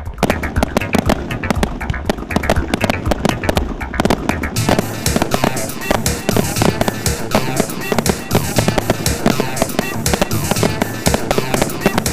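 Music with a strong beat, mixed with the bangs and crackle of aerial fireworks bursting. The sound grows denser and brighter a little before halfway through.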